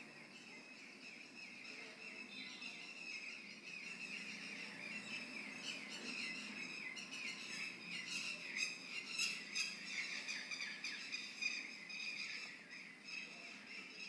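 Small birds chirping and twittering continuously in quick repeated notes, growing louder from about three seconds in, over a faint low background hum.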